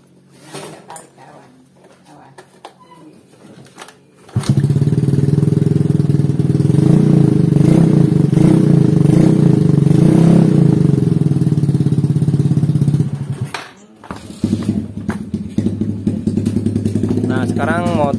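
A carbureted Yamaha Mio Soul scooter's single-cylinder four-stroke engine catches about four seconds in, after a few light clicks, then runs loud and steady. Near the end it drops away almost to nothing and picks up again at a lower level. The engine is running again after its leaking valves were lapped, so its compression is restored.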